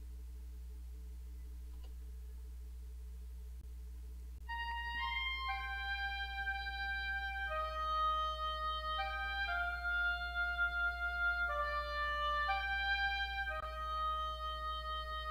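Steady low electrical hum, then from about four seconds in a sampled oboe plays a slow solo melody of held notes, one voice, the notes overlapped in the MIDI for a legato line, with slight velocity shaping.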